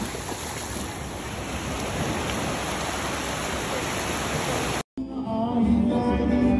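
Steady rushing noise of wind buffeting the phone's microphone on a beach. About five seconds in it cuts off abruptly, and a live band starts playing music.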